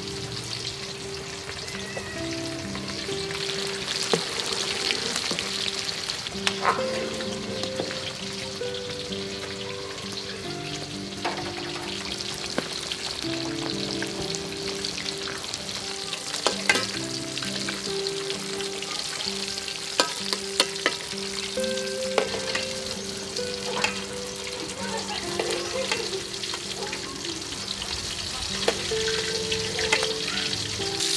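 Dried snakeskin gourami fish frying in hot oil in a steel wok: a steady sizzle, with a metal spatula clicking and scraping against the wok a dozen or so times as the fish are turned.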